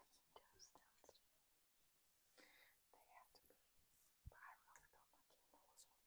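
Very faint whispering in short, broken phrases, close to near silence.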